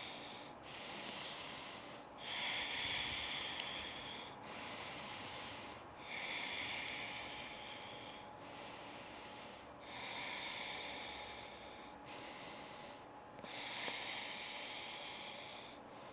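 A woman's slow, even breathing, plainly audible as a soft hiss: breaths of about two seconds each follow one another with only short gaps, about eight in all, as she holds a seated forward fold.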